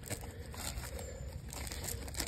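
Corrugated RV sewer hose being stretched and shifted on its plastic hose support, giving light crinkling with a few faint clicks.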